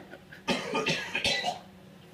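A man coughing and laughing in one hoarse burst lasting about a second, starting about half a second in, after inhaling air-duster spray.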